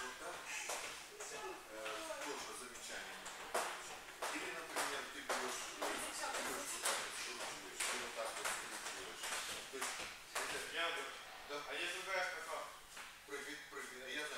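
Indistinct talking, with many short, sharp slaps and taps scattered throughout.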